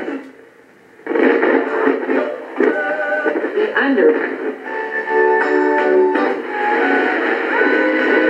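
Vintage Panasonic flip-clock radio being tuned across the dial through its small speaker: snatches of music and talk from passing stations. There is a brief near-silent gap between stations just after the start.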